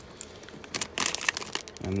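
Plastic and foil food wrappers crinkling as they are handled, a run of crackles thickest a little under a second in.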